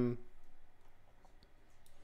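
A few faint clicks from a computer mouse as the code page is scrolled.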